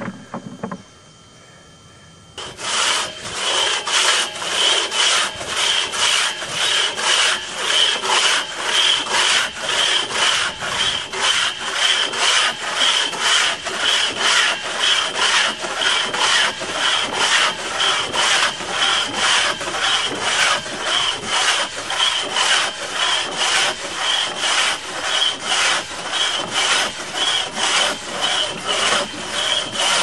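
One-man (single-buck) crosscut saw cutting through a log in a steady rhythm of about two strokes a second, starting a couple of seconds in after a short lull.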